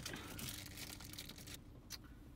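Faint rustling handling noise from the mirror dash cam and its rubber strap being fitted over the rear-view mirror, dropping quieter about a second and a half in.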